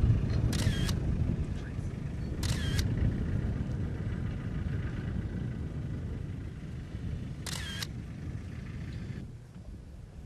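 Three short camera-shutter clicks, about half a second, two and a half seconds and seven and a half seconds in, over a steady low rumble that drops away near the end.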